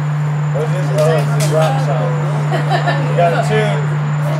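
Indistinct voices talking over a steady low electrical hum from the stage amplifiers.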